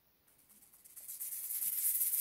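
Near silence, then about a second in a pair of wooden maracas starts shaking, a soft high rattle that grows louder as a song's intro begins.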